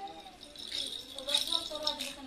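A plastic baby rattle shaken in quick bursts, getting busier and louder in the second half.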